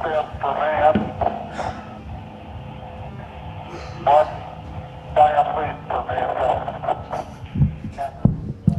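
A recording of Neil Armstrong speaking, played back from ROM through a GSM speech encoder and decoder, so the voice is thin and telephone-band. It comes in short phrases with pauses between them.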